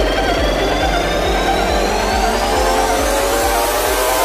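Progressive psytrance music with a steady four-on-the-floor kick drum thumping a little over twice a second, while a high synth tone rises slowly in pitch.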